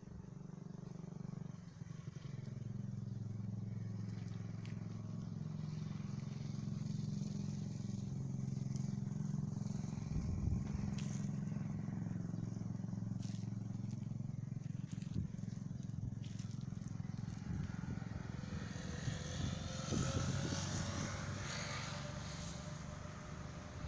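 A motor vehicle engine running steadily with a low hum that slowly grows louder. Near the end a rising whine and a rushing noise join it.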